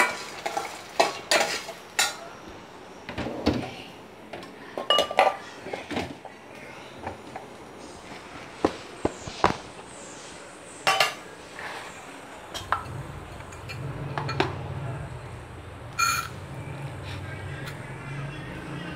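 Steel ladle clinking and scraping against a stainless steel kadai as shallots and dried red chillies are stirred, in irregular knocks that thin out after the first several seconds. One ringing metal clink near the end.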